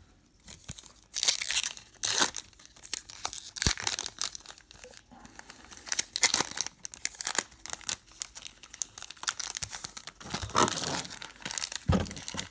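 A foil trading-card pack wrapper (2018 Upper Deck Goodwin Champions) being crinkled and torn open by hand: irregular crackling and ripping in several bursts, with the loudest rips near the end.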